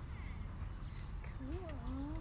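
A short vocal call, a wavering pitch that rises and falls twice, about one and a half seconds in, over a steady low outdoor rumble.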